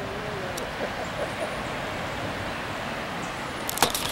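Steady rushing of river rapids. A few sharp knocks and rattles near the end come from the camera being handled.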